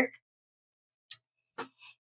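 Two faint, sharp computer mouse clicks about half a second apart, with a softer trace just after the second.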